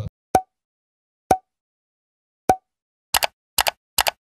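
Pop sound effects of an animated end screen: three separate pops, each with a brief tone, about a second apart, then a quick run of paired clicks near the end, with dead silence between them.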